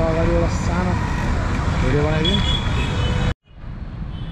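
Steady street traffic rumble with short snatches of people talking over it. The sound cuts out abruptly about three and a half seconds in and comes back quieter.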